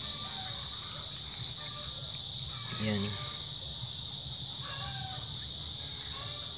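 Crickets chirping in a steady, unbroken high-pitched chorus, with faint background voices and a short voice-like sound about three seconds in.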